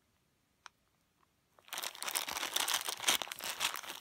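Small plastic zip bag of pearl beads crinkling as it is handled, starting a little before halfway through after an almost silent start.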